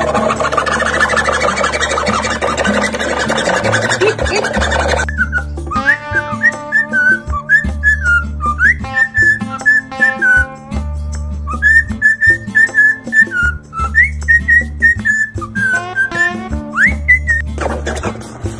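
Cockatiel chattering for about the first five seconds, then whistling a tune in short, clear notes with a few quick upward slides. Background music with a steady low beat runs underneath.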